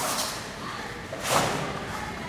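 Two sudden swishing thuds from a karateka's kata movements, a weaker one at the start and a louder one about one and a third seconds in, as he steps into a forward stance and punches.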